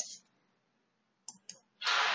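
Two quick, short clicks a little over a second in, from a computer keyboard and mouse being used to delete stray spaces in a text field. A soft hiss starts near the end.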